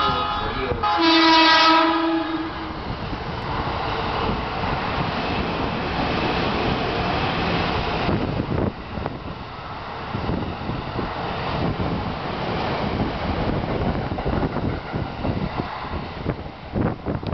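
JR East 209 series 0-番台 electric commuter train sounding its horn as it comes through the station: a short horn note at the start, then a loud, steady air-horn blast about a second in that lasts about a second and a half. The train then runs through at speed, a steady loud rumble with wheels clacking over the rail joints as the cars pass close by.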